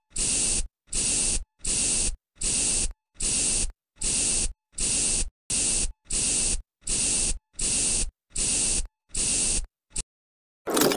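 Spray bottle sprayed over and over: a quick, even run of about fourteen short sprays, about three every two seconds, each cutting off sharply.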